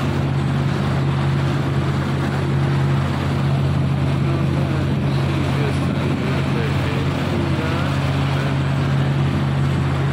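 Motorboat engine running at a steady cruising hum, with water rushing and splashing along the hull as the boat moves.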